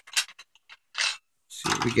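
A few light clicks and a brief scrape as a screwdriver and pinning tray are gathered and handled, followed near the end by a man's voice.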